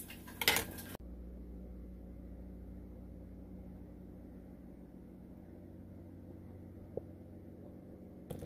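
A short scrape of a butter knife on toast about half a second in. Then a low steady hum of kitchen room tone, with one faint click near the end.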